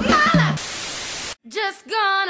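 A burst of steady static hiss, white noise like a detuned TV, starts about half a second in and cuts off abruptly after under a second. It comes between a woman's cry at the start and a voice near the end.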